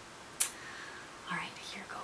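A woman speaking quietly in a near-whisper, with a short sharp hiss about half a second in.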